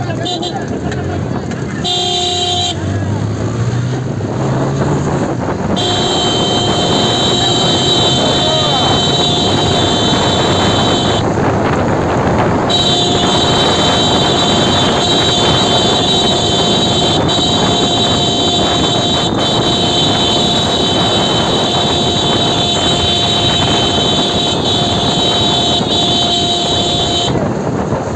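A motorcycle horn sounding almost without let-up over running motorcycle engines and road noise: a short honk about two seconds in, then one long held blare from about six seconds to near the end, broken once for a second or two around the eleventh second.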